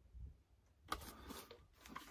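A faint, distant shotgun shot about a second in, with a short trailing echo. Otherwise near silence, with light knocks from the plastic DVD player being handled.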